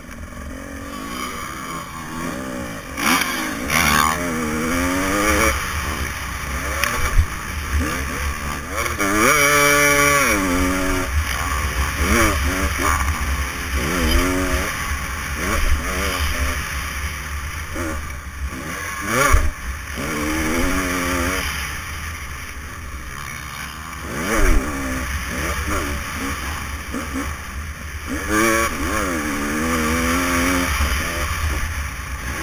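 Motocross dirt bike engine revving up and down over and over as the rider opens and closes the throttle around the track. Two sharp knocks cut through it, about seven and nineteen seconds in.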